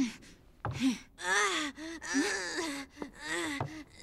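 A boy's voice groaning and gasping in pain: a short gasp, then three strained moans in a row, from a burning pain in his shoulder.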